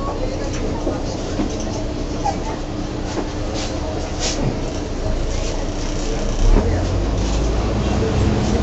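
Bus interior: the diesel engine running under a steady hum, with scattered clicks and rattles from the bodywork and fittings. The engine sound grows fuller and louder in the second half, with a brief swell about six and a half seconds in, as the bus pulls away.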